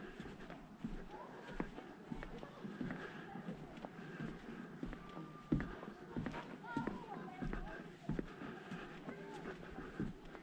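Footsteps knocking on raised boardwalk decking, step after step at a walking pace, with faint voices of other people in the background.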